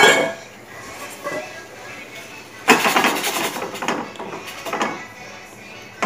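Metal kitchen sounds from a small stainless steel saucepan on a gas stove: a sharp clank at the very start, then a second burst of clattering about three seconds in.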